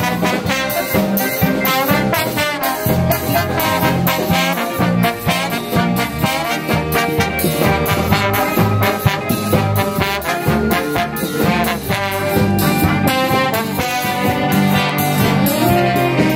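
A jazz big band playing a swing-style tune: trombones, trumpets and saxophones over drums, with a steady beat.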